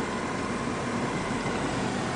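Steady road and engine noise of a car driving in traffic, heard from inside the cabin.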